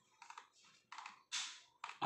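Faint taps on a computer keyboard, about four short separate clicks spread over two seconds, as the on-screen document is scrolled down.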